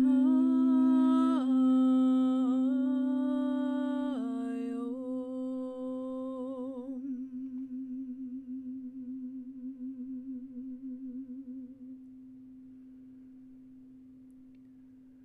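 A woman humming a long, wavering tone that steps down in pitch twice, over a steady ringing tone. Her humming fades out about seven seconds in, and the ringing tone carries on with a slow wobble, slowly dying away.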